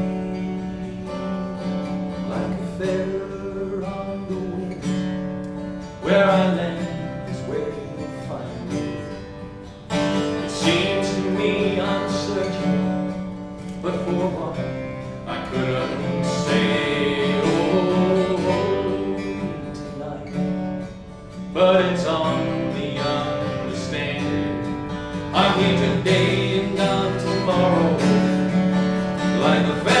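Acoustic guitar strummed and picked through the instrumental break of a slow folk song, over a steady low note, with no sung words.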